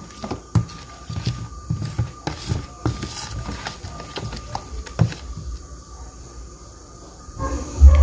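Wooden spoon stirring a thick tapioca-starch and coconut batter in a plastic bowl: irregular knocks and scrapes of the spoon against the bowl, thinning out after about five seconds. A faint steady high tone runs behind it.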